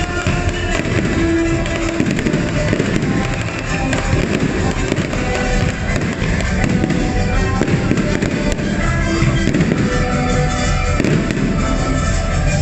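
Aerial fireworks bursting overhead in rapid pops and crackles, mixed with loud show music playing alongside.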